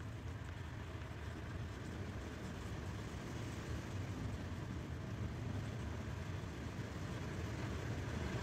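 Wind blowing over the microphone as a steady low rumble, growing slightly louder as a gust builds.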